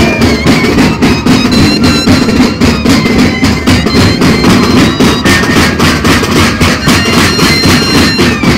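Moseñada music: a band of moseño cane flutes playing a reedy, wavering melody over a steady, rapid drumbeat.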